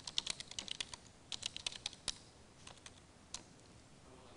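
Typing on a computer keyboard: a quick run of light keystrokes for about two seconds, then a few scattered key presses, as a line of text is entered.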